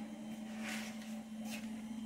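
Steady low hum of a Mabe refrigerator's compressor running. The technician suspects a refrigerant leak, because the compressor draws less current than it should.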